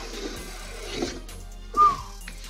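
Background music under the rustle and knocks of a cardboard shipping carton being opened and a shoe box pulled out of it, with a short, loud high-pitched squeak near the end.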